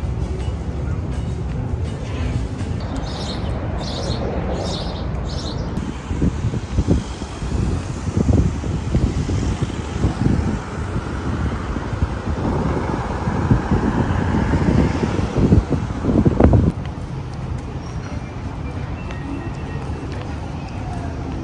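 Outdoor city street ambience: a steady rumble of traffic, with louder irregular surges from about six seconds in that settle near the end.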